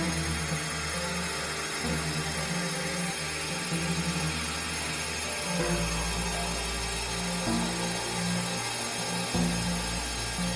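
Experimental electronic noise music: a low synthesizer drone under a dense, grinding hiss, with the bass drone changing about halfway through.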